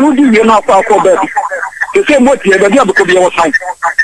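Speech only: a voice talking continuously, as heard in a radio call-in broadcast.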